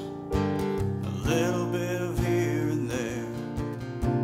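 Acoustic guitar strummed in a steady rhythm with an electronic keyboard playing piano chords beneath it, in a folk/Americana song.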